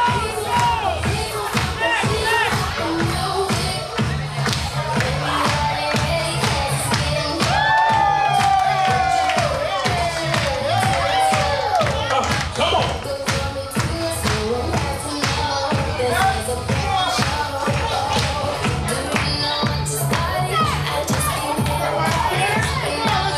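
Dance music with a steady beat and heavy bass, with guests' voices and cheering over it.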